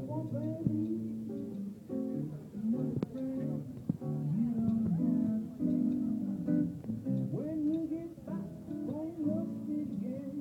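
Music with a plucked guitar playing a run of notes.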